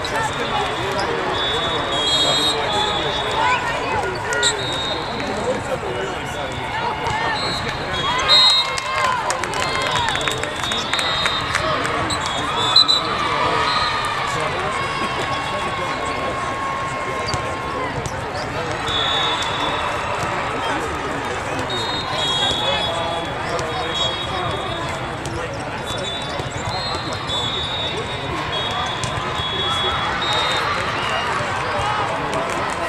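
Volleyball tournament hall ambience: many overlapping voices of players and spectators, with sharp hits of volleyballs being struck and bouncing, loudest about 8 and 13 seconds in. Short high tones come and go over the babble.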